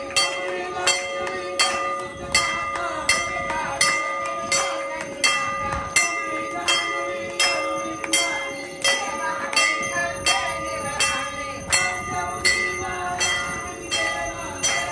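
Temple bells rung for aarti, struck at a steady rhythm of about one and a half strokes a second, their ringing overlapping between strokes.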